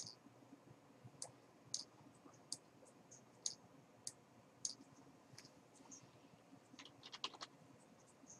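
Computer mouse clicking: single sharp clicks about every half second to second, then a quick flurry of clicks about seven seconds in.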